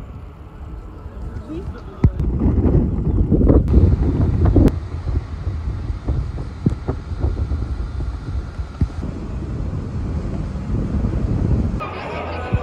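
Wind buffeting the microphone over a low rumble, heaviest between about two and five seconds in, with a few sharp knocks and indistinct voices.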